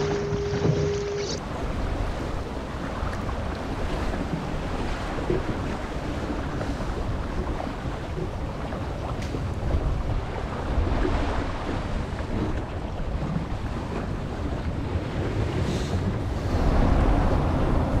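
Wind buffeting the microphone with water rushing and splashing along the hull of a small sailboat under sail in choppy water. A short steady tone sounds in the first second or so.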